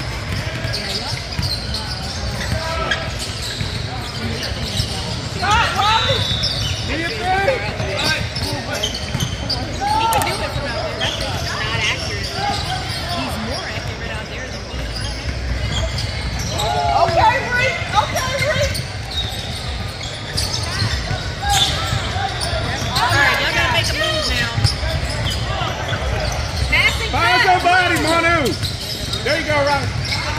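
Basketball game sounds in a large gym: a ball bouncing on the hardwood floor amid the shouts and chatter of players and spectators, with voices rising at several moments.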